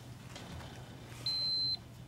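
A single high-pitched electronic beep: one steady tone about half a second long, a little past the middle, over quiet room tone with a faint low hum.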